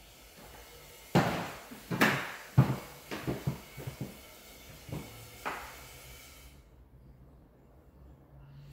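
Footsteps on a bare hardwood floor in an empty room: a handful of irregular knocking steps that stop a little past halfway.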